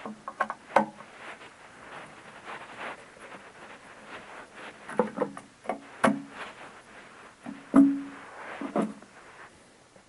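A screwdriver backing screws out of the side of a Lumagen Radiance Pro video processor's sheet-metal chassis: scattered clicks and scrapes, several with a brief metallic ring. They cluster near the start, around the middle and near the end.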